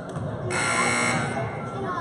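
Gym scoreboard buzzer sounding once, starting about half a second in and lasting under a second, over crowd chatter.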